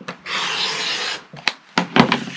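Rotary cutter blade rolling along the edge of an acrylic ruler, slicing through two layers of quilting fabric on a cutting mat: one steady rasping stroke about a second long. Two sharp clicks follow near the end.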